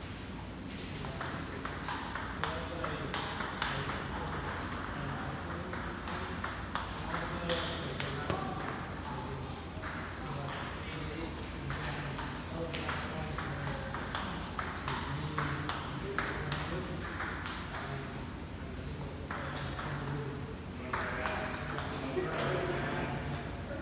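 Table tennis rally: the ball clicking off the bats and the table, one sharp click after another, with voices talking in the background.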